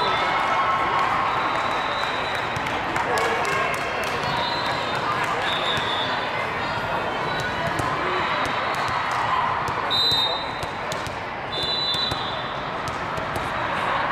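Steady din of a large hall full of volleyball courts: many overlapping voices, with repeated sharp thuds of volleyballs being hit and bouncing, and a few short high squeaks.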